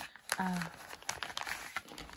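Small clear plastic zip baggies and a plastic tool-kit pouch crinkling as they are handled, with quick irregular crackles throughout. A woman briefly says "uh".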